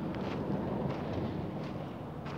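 Wind rumbling and hissing on the microphone, with a few faint footsteps.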